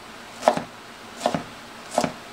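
Chef's knife slicing a red bell pepper on a cutting board: three knocks of the blade on the board, the middle one doubled, about one every three-quarters of a second.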